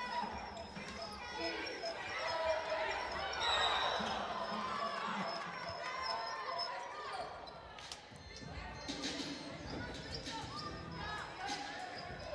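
Live basketball court sound: the ball bouncing on the hardwood floor, with short sneaker squeaks and players' and crowd voices echoing in the arena.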